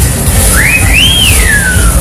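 A single whistled note sliding up, then gliding back down, lasting about a second and a half, over a loud low rumble of fairground noise.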